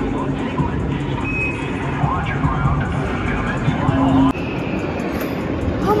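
Steady low rumble of an amusement-park ride climbing, heard from a rider's seat, with the din of an indoor amusement park behind it: faint voices and music.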